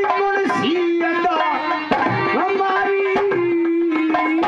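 Live Haryanvi ragni accompaniment: a harmonium playing a held, stepwise melody over dholak drum beats.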